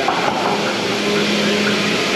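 Steady mechanical noise of a working dairy milking parlour: a constant low hum under an even hiss, from the milking equipment and ventilation running together.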